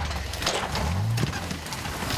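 Off-road vehicle's engine revving briefly, a low note that rises about a second in, with scattered knocks and clunks.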